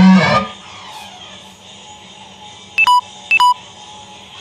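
Guitar playing that stops about half a second in. After a quiet stretch come two short electronic beeps about half a second apart, each a brief high tone stepping down to a lower one.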